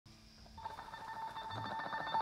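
Telephone ringing tone, a steady high beep with a rapid flutter, fading in about half a second in and growing slowly louder.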